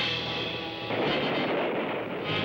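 Movie gunfire sound effect: a sharp shot at the start, then a dense noisy blast, mixed with dramatic trailer music.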